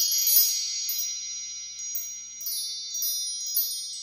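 Shimmering chime transition sound effect: a rising run of high bell-like tones tops out right at the start, then rings on as a held cluster of high notes with scattered sparkly accents, slowly fading.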